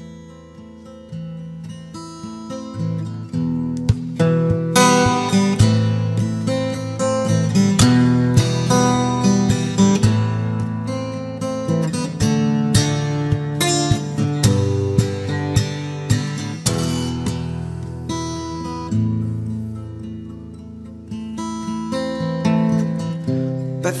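Instrumental passage of a song played on guitar, plucked and strummed notes with no singing. It starts quietly, fills out about four seconds in, eases off near the end and picks up again.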